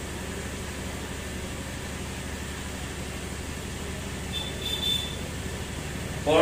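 Steady background hum and hiss of an electric pedestal fan running, with a short faint sound a little before five seconds in.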